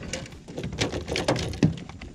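A hooked trout thrashing at the surface beside a small boat: a run of quick, irregular splashes and knocks.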